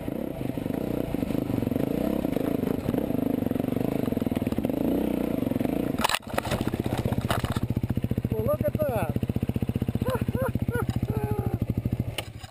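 Enduro dirt bike engine running unevenly under throttle on a rough trail, then a sharp knock about six seconds in. After that the engine idles with a fast, even pulse, the bike having come to a stop among branches, and a person's voice is heard briefly a few times over it.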